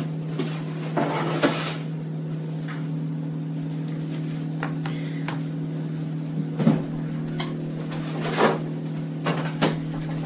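A few scattered knocks and clatters of kitchen things being handled, including a cutting board being set down on a wooden board, over a low steady hum.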